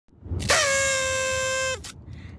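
A small toy party horn blown once: a single steady, buzzy note held for just over a second, which sags in pitch as the breath runs out.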